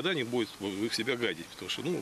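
A man speaking in a steady flow of talk.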